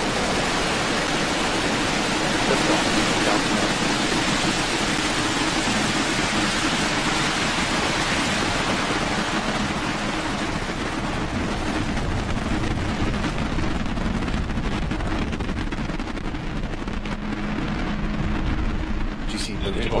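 Falcon 9 first stage's nine Merlin 1D rocket engines at liftoff and climb-out: a loud, steady rushing rumble. Its hiss dims in the second half as the rocket climbs away.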